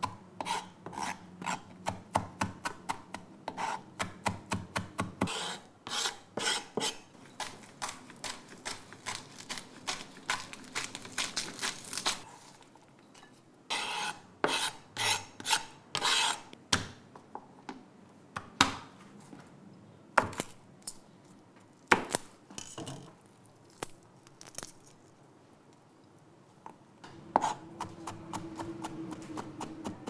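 A chef's knife chopping herbs on a plastic cutting board, a fast run of regular taps for the first dozen seconds. Then the blade scrapes the chopped greens across the board, followed by sparser single knocks. A faint low hum comes in near the end.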